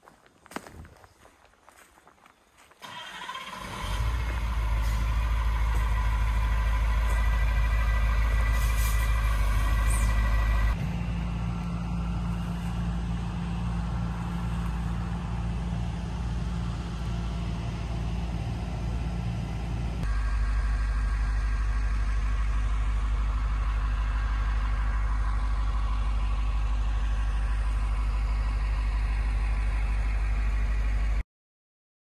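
A heavy machine's engine drone begins about three seconds in and runs steadily and loud, low and humming, shifting abruptly in tone twice. Before it there are only a few faint clicks.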